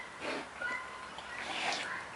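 Brown bear eating watermelon: two bouts of wet chewing as it bites into the juicy flesh, with short high calls from other animals in the background.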